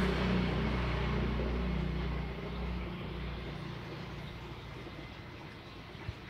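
A motor vehicle engine hums steadily, then fades away over the first two to three seconds, leaving a low background rumble.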